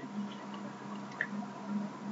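Faint steady hiss and hum of the recording between spoken sentences, with one small click about a second in.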